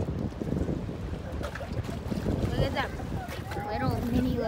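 Wind buffeting the microphone over open water, an uneven low rumble. Faint voices talk in the second half.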